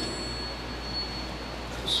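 A thin, high steady ringing tone over a low background hiss, fading out shortly before the end.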